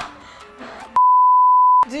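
A single steady, pure-tone censor bleep lasting just under a second, about halfway through, with all other sound cut out beneath it so that a spoken word is masked. Faint voices come just before it and laughter right after.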